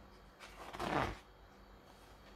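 A book page turned by hand: one short paper swish about a second in.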